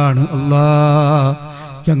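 A man chanting a devotional prayer, holding one long, slightly wavering note that breaks off about one and a half seconds in. The chant starts again just at the end.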